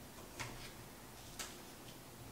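Faint handling of paperback books in a cardboard box: two light ticks about a second apart over quiet room tone.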